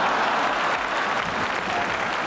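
Studio audience applauding, a steady, dense clapping.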